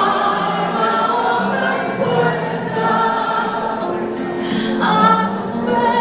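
An audience singing a Ladino song together with a woman's amplified lead voice, many voices at once over the music.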